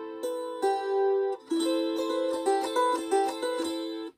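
Wing-shaped gusli (Baltic psaltery) strummed in repeated chords, the left-hand fingers muting strings to shape each chord over the diatonic tuning; the notes ring on between strokes and are damped suddenly at the end.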